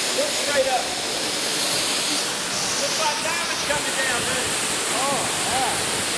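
Ruby Falls, an underground cave waterfall, pouring steadily: an even, unbroken rush of falling water.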